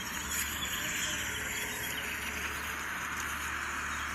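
Steady outdoor ambience: an even hiss with a low hum underneath, with no distinct events.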